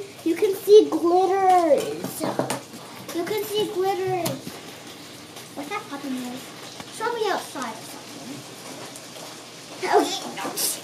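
A young girl's voice, indistinct and without clear words, mostly in the first half, over faint wet squishing of a large slime being pressed and stretched by hand; quieter for the last few seconds.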